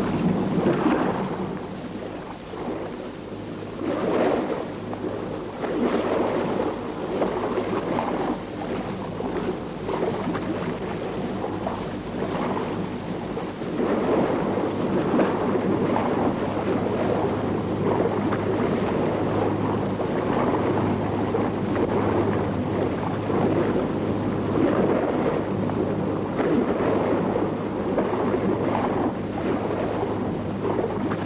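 Rough sea: waves washing and breaking with wind, in uneven surges every second or two.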